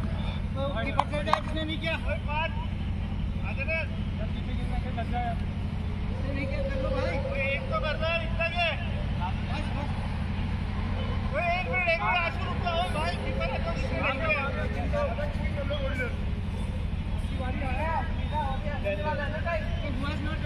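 Players' voices talking and calling out at a distance across the pitch, over a steady low rumble.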